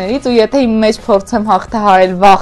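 Speech only: a woman talking in Armenian.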